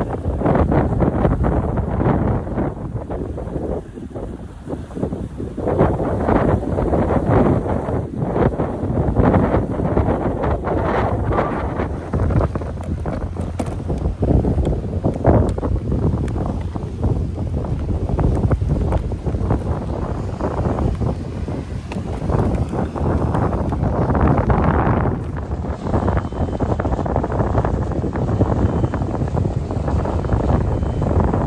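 Strong gusty wind buffeting the microphone, a loud, uneven rumble that rises and falls with the gusts throughout.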